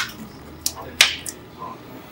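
About four sharp clicks and taps from hands handling a freshly printed piece on a UV flatbed printer's table, the loudest about halfway through.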